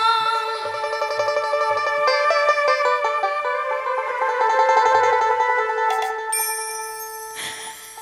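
Instrumental break in a Bengali folk song: a mandolin picks a run of quick notes over held keyboard notes and a soft, low drum beat. The music thins out and grows quieter toward the end.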